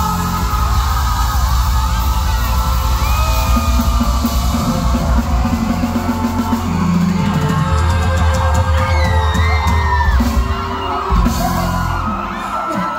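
Loud amplified live band music with heavy bass and drums, and shouts rising over it a few times.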